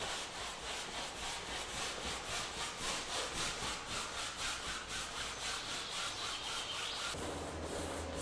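Flat bristle brush scrubbing oil paint onto canvas in quick, even back-and-forth strokes, about three to four a second.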